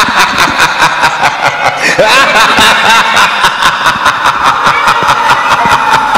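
A group of children shouting and laughing loudly together, over a fast run of sharp beats several times a second.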